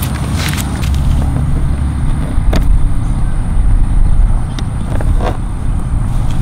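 Wind buffeting the microphone, a loud, uneven rumble, with a few light clicks from handling the battery charger's plastic plug at the scooter's panel.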